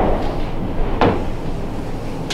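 Two knocks: a dull thump at the start and a sharp clack about a second in, as a chalkboard eraser is picked up off the board's tray.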